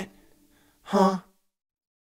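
Music cuts off abruptly. About a second later a person makes one short, breathy voiced sound, like a gasp.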